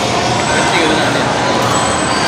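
Steady background din of a busy indoor public hall, with faint, indistinct voices murmuring in it.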